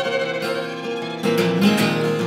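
Acoustic guitar strumming under a fiddle holding long bowed notes, with no singing; the strumming grows fuller about a second and a quarter in.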